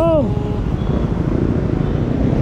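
Steady low rumble of outdoor street noise, with one short rising-and-falling vocal sound from a person right at the start.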